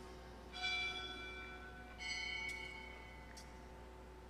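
Altar bell struck twice, about a second and a half apart, each stroke ringing on and fading, marking the elevation of the chalice at the consecration.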